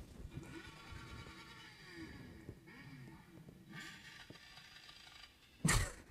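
Group of motorcycles riding slowly, heard faintly through a helmet camera, the engine pitch rising and falling. A short loud rush of noise comes near the end.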